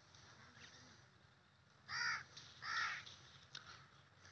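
A crow cawing twice, a little under a second apart: two short, harsh calls over a faint outdoor background.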